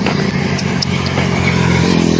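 A motor vehicle's engine running steadily on the highway, growing a little louder as it draws near.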